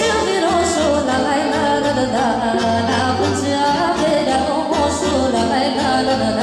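Live Romanian Banat folk music: a woman sings through a microphone over accordion and violin, with a steady bass line, amplified through PA speakers.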